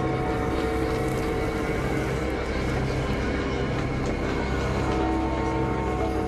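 Wheeled excavator's diesel engine running steadily while it digs, with a steady hum.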